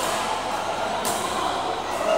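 Din of a busy indoor badminton hall, with two sharp high ticks about a second apart, typical of shuttlecocks being struck by rackets on the courts.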